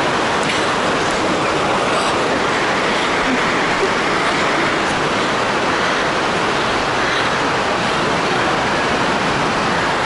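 Heavy rain pouring down on a marquee roof and glass walls: a loud, steady rushing hiss with no let-up.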